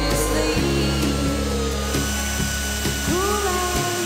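Cordless drill with a step bit boring through a steel flat bar, a steady whine that sags slightly in pitch as it cuts, heard under background music.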